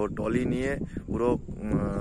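A cow mooing: a long, drawn-out low call, then a shorter one near the end.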